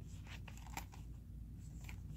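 Faint handling noise: a few soft clicks and rubs as a small zippered hard-shell carrying case is turned over in the hands.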